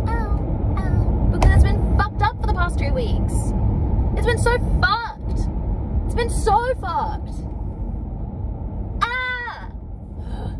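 Steady road and engine noise inside a moving car's cabin, with a woman's voice breaking in with short non-word vocal sounds several times, the last one falling in pitch near the end.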